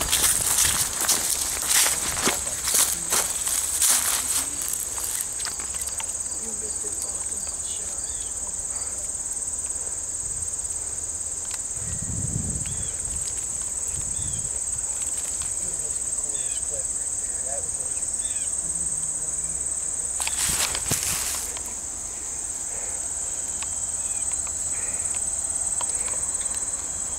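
Insects in summer grass making a steady, unbroken high-pitched drone. Footsteps and rustling click over it in the first few seconds, and again briefly about twenty seconds in.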